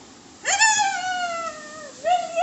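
A young child's single long, high-pitched vocal call about half a second in, jumping up quickly and then sliding slowly down in pitch for about a second and a half.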